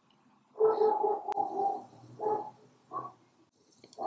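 Dogs calling: one long, steady call about half a second in, then two short calls.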